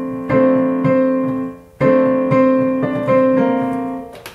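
Digital piano playing two sustained chords, struck about a third of a second in and just under two seconds in, with a few melody notes moving above each one, the last fading near the end: chord voicings being tried out at the keyboard.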